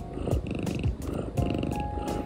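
A pet cat purring steadily while breathing through an AeroKat inhaler spacer mask during asthma treatment. The purring is a sign that the cat is relaxed and comfortable with the inhaler.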